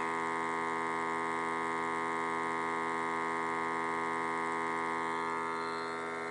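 Steady electrical hum, a buzzing tone with many overtones, unbroken and slightly quieter near the end.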